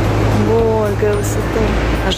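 Steady low rumble of outdoor background noise, with a brief voice about half a second in.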